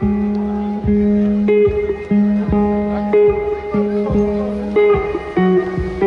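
Live band music led by guitar, with chords struck in a steady rhythm.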